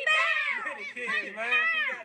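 A child's high-pitched voice in a sing-song, gliding up and down through drawn-out calls with short breaks between them.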